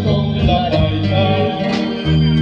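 A live band playing a song, with electric bass, drum kit and guitar under sung vocals.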